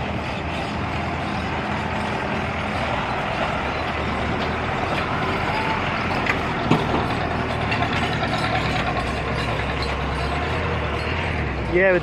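Truck engine running steadily close by, with a dense rattling mechanical clatter; the low engine hum grows stronger near the end. A single sharp click comes about seven seconds in.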